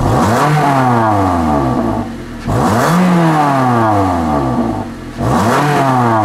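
2019 Toyota Corolla LE's 1.8-litre four-cylinder engine revved three times in Park, heard at the tailpipe: each blip climbs quickly and falls back slowly toward idle, about two and a half seconds apart.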